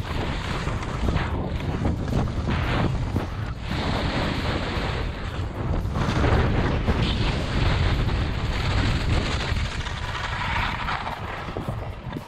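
Wind buffeting the microphone of a skier coming down at speed, with the rushing scrape of skis on crusty, wind-packed snow, dipping briefly in level a few times.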